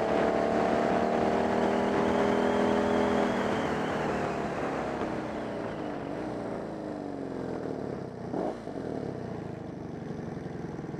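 Motorcycle engine running under way, holding a steady pitch for the first few seconds, then falling in pitch and loudness as the bike slows, with a brief rev about eight and a half seconds in. Wind rushes over the microphone.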